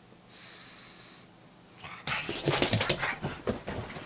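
A pug making excited noises: a thin, high steady squeak near the start, then about a second of loud, rapid snorting and scuffling about halfway through, with a few shorter snorts after it.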